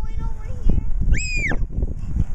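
Wind buffeting the microphone with a steady low rumble. About a second in, a toddler gives one short, high-pitched squeal that rises and falls.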